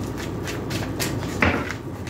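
A tarot deck being shuffled by hand, the cards giving a run of soft clicks and slaps, with one louder knock about one and a half seconds in.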